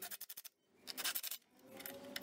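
A power drill driving screws into wood, heard faintly as three short bursts of rapid clicking.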